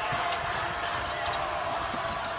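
A basketball being dribbled on a hardwood court during live play, against steady arena crowd noise.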